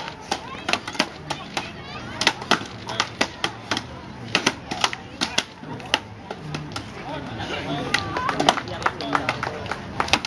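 Several axes biting into wooden logs in an underhand chop race: sharp, overlapping chopping strikes at an uneven rhythm, several a second, from competitors chopping side by side.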